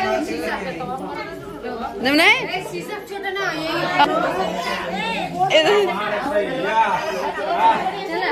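Group of people chattering, several voices overlapping, with one voice sweeping sharply up in pitch about two seconds in.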